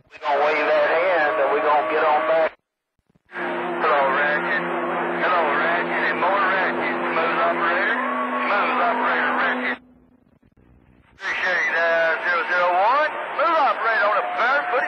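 CB radio receiving skip on channel 28: garbled, hard-to-follow voices come over the air in three transmissions that switch on and cut off abruptly, with short gaps between them. Steady low tones run under the long middle transmission.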